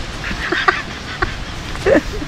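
Two women laughing hard, in short breathy bursts.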